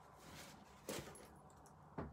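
Faint rustling of a paper tissue being handled and set down after blotting lipstick, with one short, sharp crinkle about a second in and a small click at the end.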